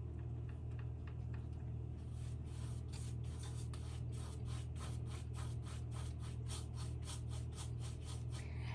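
Paintbrush laden with oil paint rubbing and scrubbing across a stretched canvas in quick, even strokes, about four to five a second, starting about two seconds in, over a steady low hum.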